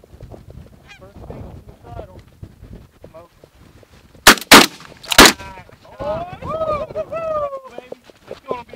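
Three shotgun blasts in quick succession about four seconds in, fired at a single flying goose. Goose honking around them, loudest in a run of rising-and-falling honks just after the shots.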